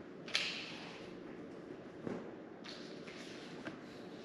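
Quiet room with a few faint, short taps and knocks, the clearest about a third of a second in.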